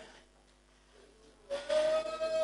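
Church music: a single steady held note, the last of one fading out at the start, then after a short pause a new one held from about halfway through.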